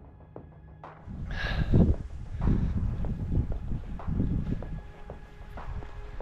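Quiet background music, then from about a second in, wind buffeting a handheld camera's microphone in loud, uneven low gusts, with the music faintly underneath.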